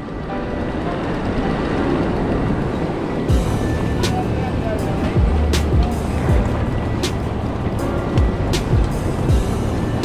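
Rushing river water and wind noise on the microphone; about three seconds in, background music with a deep bass and a steady beat comes in over it.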